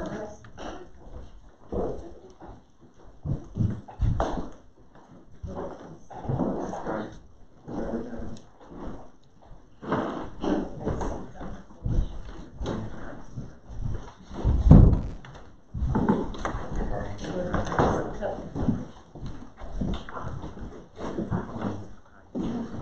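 Indistinct low voices with scattered knocks and handling noises, and one loud thump about 15 seconds in.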